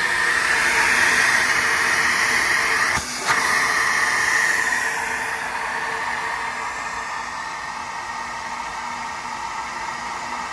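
Saenz flow bench's vacuum motors pulling air through a Trick Flow small-block Mopar cylinder-head port at 28 inches of depression: a loud, steady rush of air. About three seconds in the sound dips briefly with a click, and from about five seconds on the rush settles quieter, which the owner puts down to the air failing to stay attached in the port so the flow drops and won't recover.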